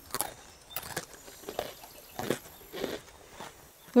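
Munching and chewing noises: about five short, irregular bites as sticks are gnawed and eaten.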